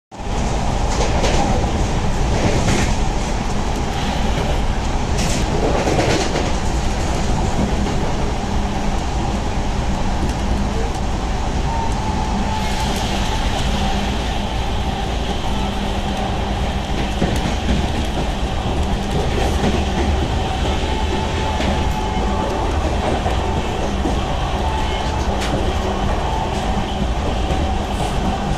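An express train's passenger coach running at about 110 km/h, heard from inside: a steady heavy rumble of wheels on rail, with several sharp clacks over the first few seconds and a faint high whine through the middle.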